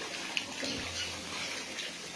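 Floodwater rushing and splashing: a steady wash of water noise dotted with small splashes.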